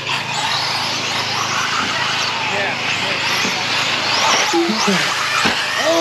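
Several radio-controlled mini truggies running around a dirt track, their motors whining up and down in pitch as they speed up and slow for the corners, with a steady hiss of tyres and dirt. Voices come in near the end.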